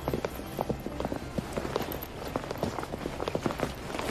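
Footsteps of several people walking on a hard, polished floor: a busy, irregular clicking over a low steady hum.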